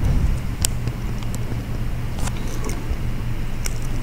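Steady low room hum, with a few faint ticks from a stylus tapping a tablet screen during handwriting.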